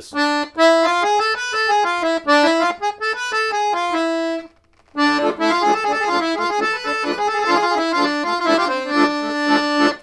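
Piano accordion (a Weltmeister) playing a melodic run on the Hejaz scale starting on D, in a Romani and Bulgarian accordion style. It comes in two phrases with a short break about four and a half seconds in.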